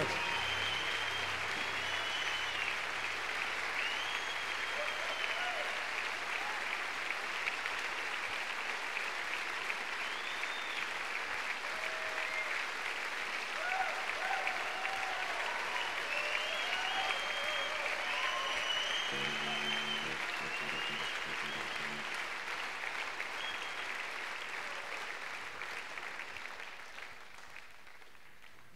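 A large concert audience applauding steadily, with scattered whistles and shouts over the clapping. The applause dies down near the end.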